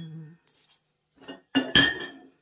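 Glazed ceramic flowerpots knocking and clinking against each other as they are set down: a light knock, then two sharp knocks with a brief ring near the end.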